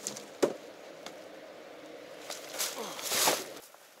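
A hiking backpack being handled and swung on: a sharp knock about half a second in, then a rustling swish of fabric and straps near three seconds.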